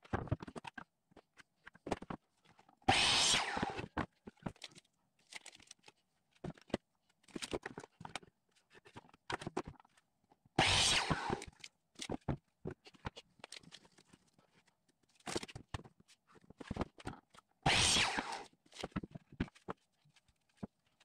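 Delta miter saw cutting through a 1x4 board three times, each cut about a second long. Short knocks and clatter of the boards being handled and set against the fence come between the cuts.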